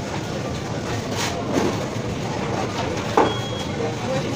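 Fast-food kitchen background noise: a steady mechanical hum from the kitchen equipment, with a couple of knocks and paper-bag rustles and a thin high electronic beep starting about three seconds in.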